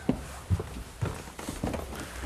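Footsteps of people climbing a narrow indoor staircase: several separate low thumps, about one every half second.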